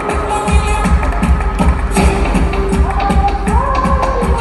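Urban flamenco dance track with an electronic beat: a steady, even low pulse under a sustained melodic line that glides upward near the end.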